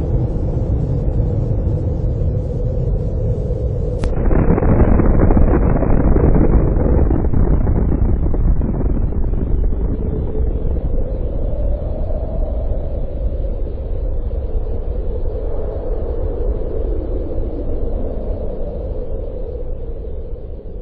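Long, deep explosion rumble. It swells suddenly about four seconds in, then slowly dies away, still rumbling low throughout.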